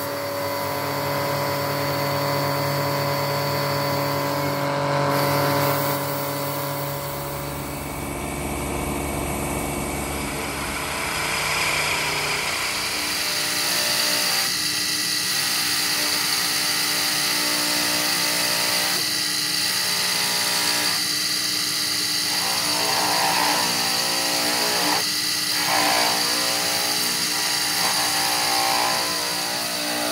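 Belt grinder running steadily as a Bowie knife's pakkawood handle is shaped against the belt. Partway through, this gives way to a motor-driven cloth buffing wheel spinning as the steel blade is polished against it.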